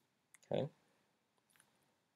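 Faint computer mouse clicks: a couple just before a spoken word and a few more about a second and a half in, advancing the presentation to the next slide.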